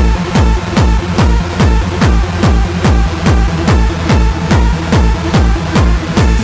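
Hardcore techno (gabber) playing in a DJ mix: a heavy distorted kick drum with a falling pitch on every beat, about two and a half beats a second, under steady synth lines.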